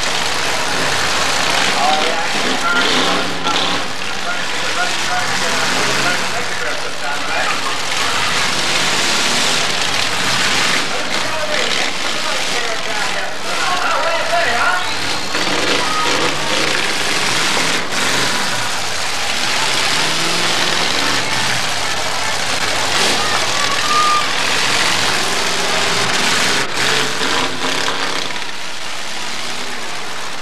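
Demolition derby cars running and revving as they ram each other, with a few sharp crashes of metal on metal, over a steady din of crowd voices.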